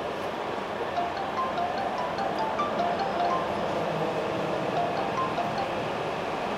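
Light background music: a sparse melody of short chime-like notes, over a steady hum of background noise.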